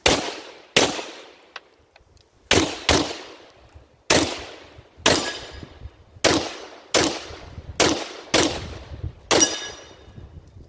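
Handgun fired eleven times at an uneven pace, shots about half a second to a second apart with some closer pairs, each crack followed by a long echo that dies away.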